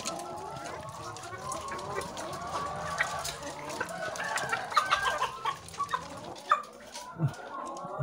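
Caged laying hens clucking, many overlapping calls from several birds at once, with sharp clicks of beaks pecking feed from a metal trough.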